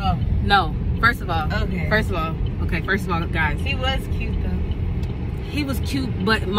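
A woman talking over the steady low rumble of road and engine noise inside a moving car's cabin.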